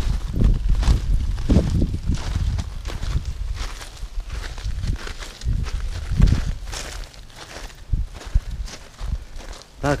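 Irregular footsteps on gravel, with a steady low rumble on the microphone.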